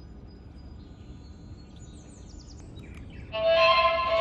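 Quiet outdoor ambience with a few short bird chirps, then a bit over three seconds in a violin melody starts suddenly and loudly, played by a 3D-printed mini gramophone toy.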